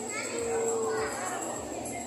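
Background chatter of a crowd, children's voices among it; a steady tone is held for about half a second near the start.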